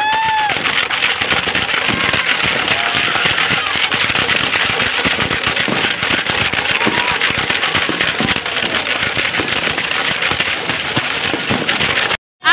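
Many fireworks and firecrackers going off at once: a dense, continuous crackle of overlapping pops and bangs.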